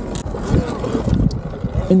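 Wind buffeting the microphone and low rumble while riding a Sur-Ron electric dirt bike, with no engine note.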